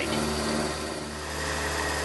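Milling machine running steadily, an 8 mm end mill cutting through an aluminium plate under power feed; a thin high whine joins about one and a half seconds in.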